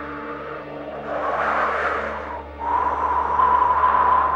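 Dramatic background score: a steady low drone under a whooshing swell, a brief dip, then a long held high note that grows louder towards the end.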